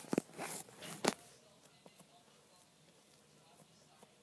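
Fingers pressing and poking soft butter slime, giving a few short squishes and sticky clicks in the first second or so, then only faint occasional ticks.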